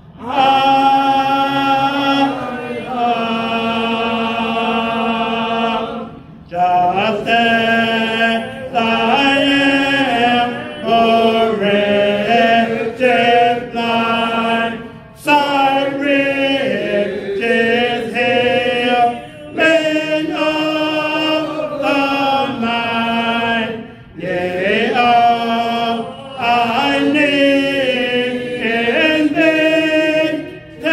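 Unaccompanied hymn singing, a man's voice at the microphone leading the invitation hymn in long held notes, with short breaks between phrases.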